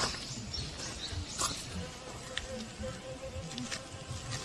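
Honeybee buzzing around the flowers, heard as a thin, wavering hum that grows stronger in the second half. A few faint clicks and soft low knocks come through alongside it.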